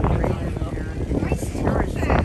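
Indistinct voices of people talking aboard a river cruise boat, over a steady low rumble of the boat's engine and wind on the microphone.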